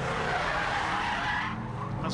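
Subaru Impreza rallycross cars sliding on loose gravel: a hiss of tyres scrabbling and stones spraying over a low engine note. The hiss thins about a second and a half in.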